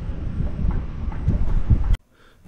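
Wind buffeting the microphone: a heavy, uneven low rumble that cuts off suddenly at the end.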